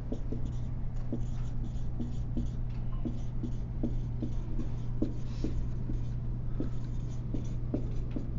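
Someone writing by hand in quick, irregular short strokes, several a second, over a steady low room hum.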